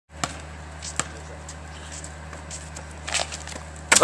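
Basketball bouncing on asphalt: two sharp bounces in the first second, then fainter knocks, and a louder hit just before the end, over a steady low hum.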